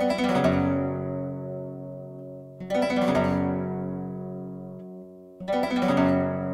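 Nylon-string flamenco guitar playing a Tarantos chord as an arpeggio: the fingers sweep quickly across the strings and the chord is left to ring and slowly fade. This happens three times, about two and a half seconds apart.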